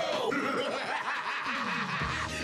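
A cartoon character's mocking laugh, its pitch sliding down twice.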